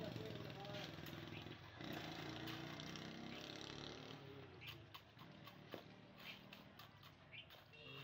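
Faint short scrapes and taps of a steel trowel working wet cement mortar against a wooden form, coming in a run through the second half, over a low steady hum.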